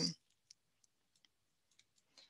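A few faint, scattered clicks of a computer mouse, about four irregularly spaced over two seconds.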